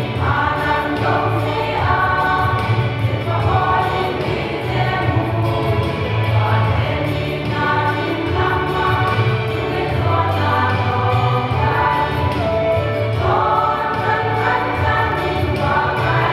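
A women's choir singing a hymn together, in phrases of a few seconds each, over a steady low bass underneath.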